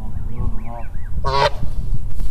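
Canada gosling peeping in a quick run of high, arched notes, then an adult Canada goose gives one short, loud honk about a second and a quarter in.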